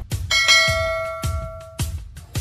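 A bell-like chime strikes once about a third of a second in. Several tones ring together and fade over about a second and a half, with a low music beat pulsing under it.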